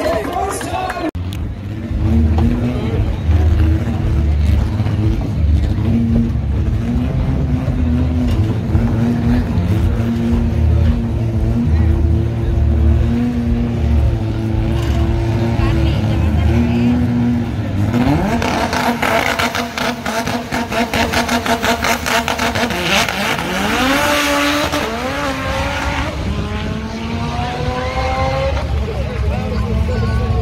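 Drag-racing car engine running loud and lumpy at the starting line. After about eighteen seconds it revs up in several rising sweeps, each one breaking off and climbing again, as the car launches and pulls away down the strip with tyre noise.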